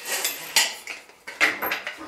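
Several small metallic clinks and knocks as a stainless-steel bathroom faucet's base plate is fitted onto the faucet body.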